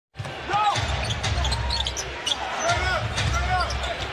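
Basketball being dribbled on a hardwood court, with sneakers squeaking in short rising-and-falling chirps over the murmur of an arena crowd.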